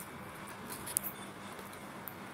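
Quiet room tone with a faint steady hiss, broken by one short click about halfway through.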